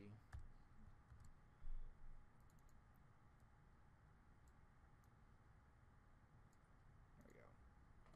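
Near silence: faint room tone with a few scattered soft computer mouse clicks, and one low thump just under two seconds in.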